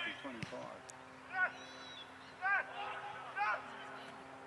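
A bird calling three times, short arching calls about a second apart, over a faint steady hum.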